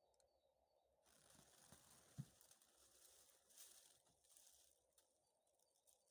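Near silence with faint rustling from about one second in until past the middle, and one soft low knock about two seconds in.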